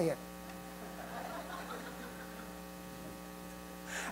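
Steady electrical mains hum in the sound system, a low buzz made of several even tones.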